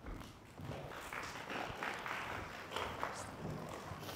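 Light, scattered applause from a small audience: irregular soft claps.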